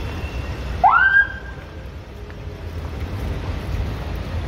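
Slow city street traffic rumbling steadily at close range. About a second in, a brief loud tone rises sharply in pitch and levels off before stopping, the loudest sound here.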